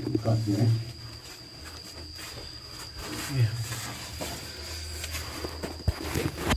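A man's low voice, briefly at the start and again about three seconds in, with soft scuffing and scraping in between.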